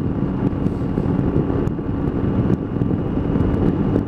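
Triumph motorcycle running at steady cruising speed, a constant engine drone under heavy wind rush and buffeting on the helmet-mounted microphone.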